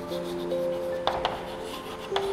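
Chalk writing on a chalkboard: scratching strokes with a couple of sharp taps about halfway through, over soft background music with held notes.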